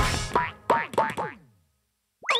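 Cartoon bouncing-ball sound effect: a ball bounces about five times. Each bounce is a springy boing that falls in pitch, and the bounces come quicker and fade away.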